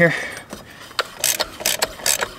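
Hand ratchet clicking as it cranks a belt tool threaded into an ATV's CVT clutch, spreading the sheaves so the drive belt drops in for removal. A single click about a second in, then a quick run of clicks near the end.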